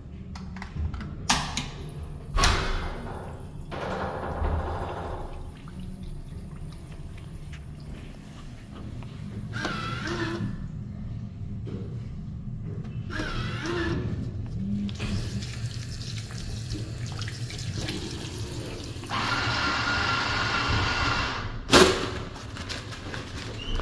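A urinal's chrome flushometer valve goes off with a thunk and water rushes through the bowl. Then an automatic foam soap dispenser whirs twice in short bursts. Near the end a motion-activated paper towel dispenser runs its motor for a couple of seconds before a sharp snap.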